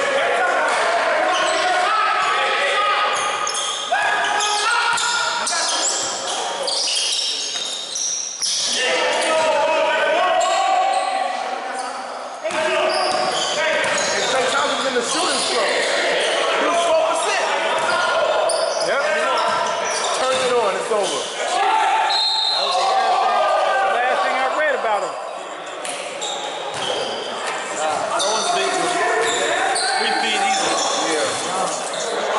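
A basketball bouncing on a gym floor during play, with players' indistinct shouting and chatter throughout. Everything echoes in a large hall.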